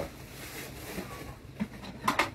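Faint rustle of the plastic wrapping bag as it is pulled off a new glass electric kettle.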